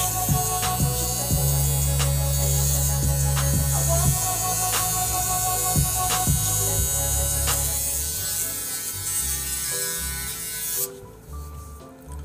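Handheld electric shaver running against the face, buzzing as it is worked over upper-lip and cheek stubble; it is switched off suddenly near the end.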